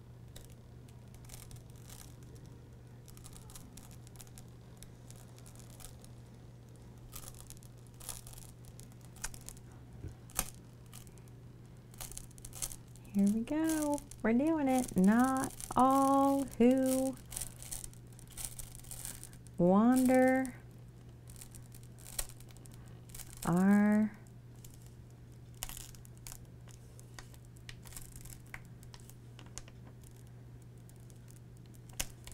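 Vinyl lettering and its transfer sheet being rubbed down and peeled on a canvas, with faint crinkling, tearing and tapping throughout. About halfway through, a woman's voice makes several short wordless sounds, each rising in pitch. A steady low electrical hum lies underneath.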